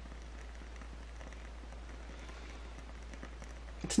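Quiet room tone in a pause between words: a steady faint hiss with a low hum underneath and no distinct sounds. A woman's voice starts right at the end.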